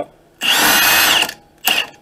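Impact wrench with a 30 mm axle socket spinning off a front axle nut: one run of about a second, then a short blip. The nut was really loose and came off easily.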